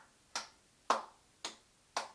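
Fingers snapping a steady beat, about two snaps a second, keeping time for a cappella singing.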